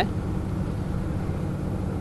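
Steady low background rumble with a faint hiss and no distinct events.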